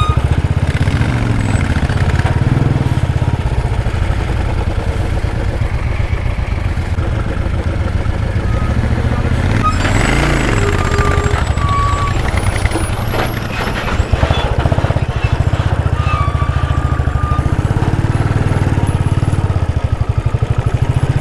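Motorcycle engine running steadily in low gear, climbing a rough unpaved mountain track, with an even pulsing beat. The engine note rises and falls briefly about halfway through.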